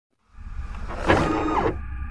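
Sound-designed mechanical effects for an animated machine: a low rumble with a motor-like whir that starts just after the opening silence. A click comes about a second in, followed by a whir that falls in pitch.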